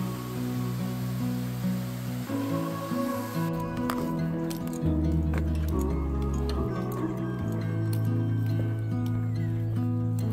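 Background instrumental music with slow, sustained chords that change every second or so.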